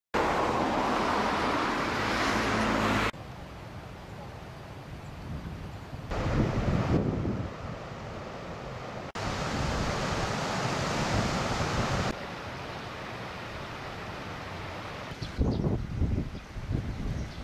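Outdoor wind rushing over the camera microphone as a steady hiss and rumble. Its level jumps up and down abruptly every few seconds.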